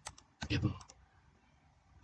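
Sharp computer mouse clicks: one right at the start and a few quick ones just before a second in.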